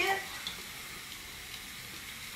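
Crumbled hard tofu frying in a stainless steel skillet: a steady, quiet sizzle.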